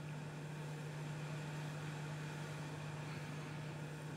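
Hot air rework station blowing at a low air setting while reflowing solder under a small board connector: a faint, steady hum with a soft even hiss.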